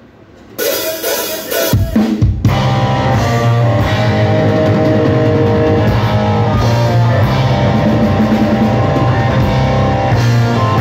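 Live metal band starting a song. After a brief hush a sudden loud opening hit comes about half a second in, and from about two and a half seconds the full band of electric guitar, bass and drum kit plays steadily.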